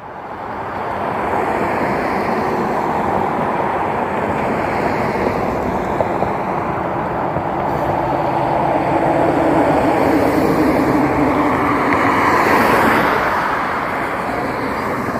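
Road traffic passing close by on a multi-lane street: a steady noise of tyres and engines that builds over the first second or two and swells again near the end as vehicles go by.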